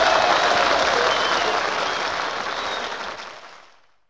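Audience applause at the close of a comic big-band record, with a few faint pitch glides in it, fading out to silence just before the end.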